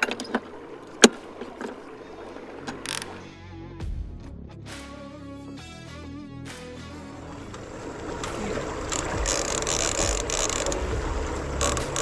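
Line-counter trolling reel's clicker and drag ratcheting as line is pulled off by a muskie striking the trolled crankbait, building up from about eight seconds in. A few sharp clicks come near the start.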